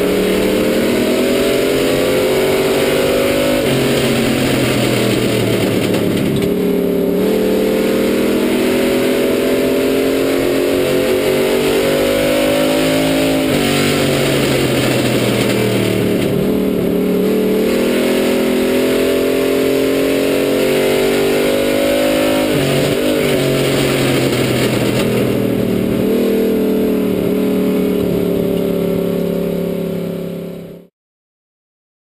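Street stock race car engine heard from inside the cockpit at race speed. Its pitch climbs under throttle and falls back each time the throttle is lifted, over and over.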